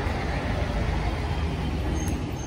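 Steady low rumble of road traffic, with vehicle engines running close by.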